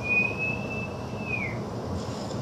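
A single high, pure whistling tone, held at a nearly steady pitch for about a second and a half, then sliding down as it dies away.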